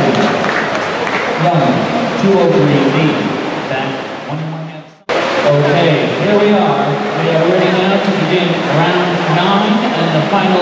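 Indistinct voices of people talking in a large, echoing indoor pool hall. The sound fades out about halfway through, then the talking cuts back in abruptly.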